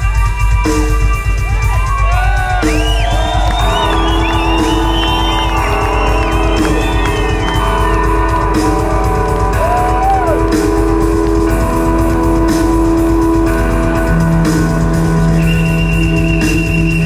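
Live rock band in an instrumental passage. An electric guitar is played with a violin bow, giving sustained notes and arching, swooping glides in pitch, strongest in the first half. Steady drums and bass play underneath.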